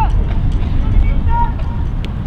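Short, distant shouts from several people, with a heavy low rumble of wind buffeting the microphone throughout.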